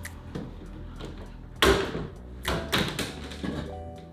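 Plastic front bumper cover of a 2019 Dodge Charger being pulled loose by hand: one sudden loud crack about one and a half seconds in, then a few smaller knocks as it comes away. Background music plays underneath.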